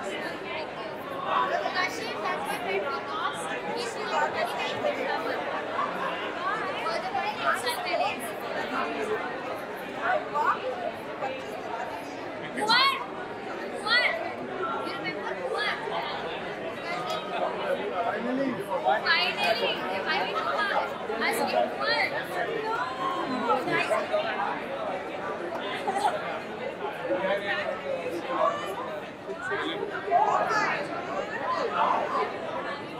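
Chatter of a packed crowd: many voices talking over one another at once, with no single voice standing out.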